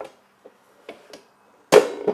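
A DeWalt thickness planer being turned over and set down: a few light knocks, then one loud clunk with a short ring near the end.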